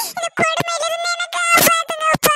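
High-pitched cartoon crying effect: a sped-up, synthetic-sounding voice wailing on a long, nearly level note, broken by short breaths.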